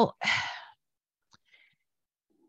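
A short breathy sigh, an exhaled breath right after a spoken word, followed by near silence with two faint clicks.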